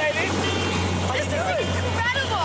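Steady low hum of an aircraft engine running, with excited voices over it.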